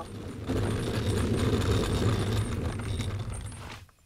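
Low, rough rumbling with a rattling crackle, a cartoon sound effect that starts about half a second in and fades out just before the end.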